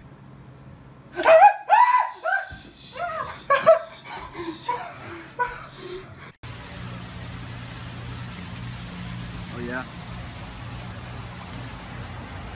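A man laughing loudly in bursts, with other excited voices. About six seconds in, this cuts off suddenly and gives way to a steady rushing noise with a low hum.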